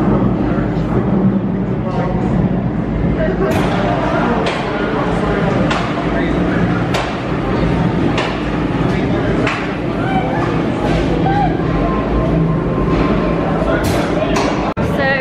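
A roller coaster train with suspended seats rolling into the station over a steady low hum, with sharp clicks about every second and a quarter for several seconds. Station music and people talking run underneath.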